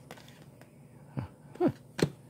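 Faint clicks of trading cards being handled, then a man's voice going "huh" twice in short grunts, about a second in.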